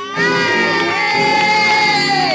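A voice holds one long, high note, then falls away near the end, over crowd cheering.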